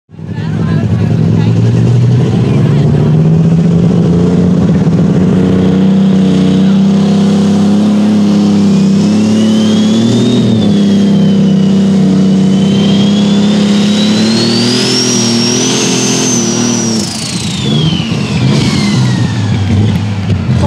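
Turbocharged diesel engine of a light super stock pulling tractor running flat out under load down the track, with a high turbo whistle that rises, dips, climbs higher and then falls away. About 17 seconds in the engine note drops as the driver comes off the throttle near the end of the pull.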